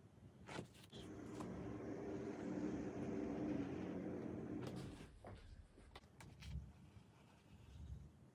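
A faint motor vehicle goes past, its low engine hum swelling and fading over about four seconds. A few light clicks and knocks come before and after it as a plastic sheet is handled on a wet acrylic pour.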